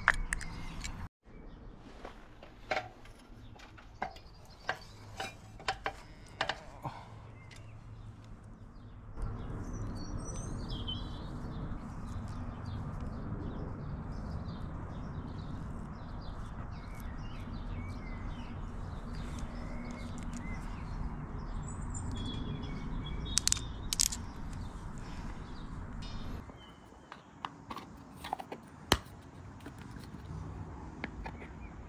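Scattered small clicks and scrapes of hands working a utility knife and electrical cable at a plastic junction box, with birds chirping faintly in the background. A steady low rumble comes in about nine seconds in and drops away near the end.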